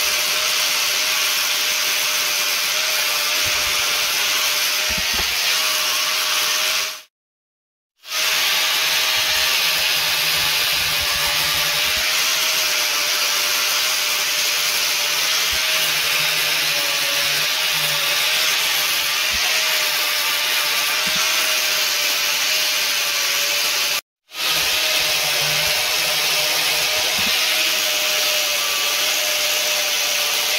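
Angle grinder with a sanding disc running steadily against wood, its motor whine under the continuous grinding of the disc on the grain as a wooden block is shaped. The sound cuts out suddenly twice, for about a second around seven seconds in and very briefly around twenty-four seconds in.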